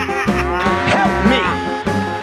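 A cow mooing, its call gliding in pitch, over steady background music.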